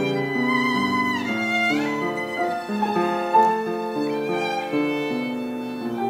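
Violin playing a slow melody in long, held notes, with a quick upward slide about two seconds in, over piano accompaniment.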